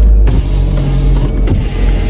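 Steady low rumble inside a car's cabin with a constant motor hum over it.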